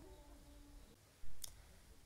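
A single short click about one and a half seconds in, over a faint low hum.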